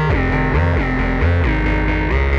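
Behringer K2 analog synthesizer playing a buzzy, bright melodic line through a Strymon Volante echo pedal, its notes changing every few tenths of a second and sliding smoothly from one pitch to the next.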